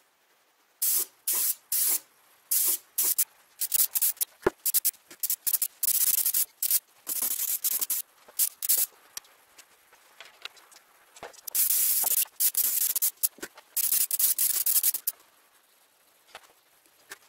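Airbrush spraying paint in many short bursts of hiss, each switched on and off sharply by the trigger, some lasting under half a second and a few over a second, with a single sharp click about four and a half seconds in.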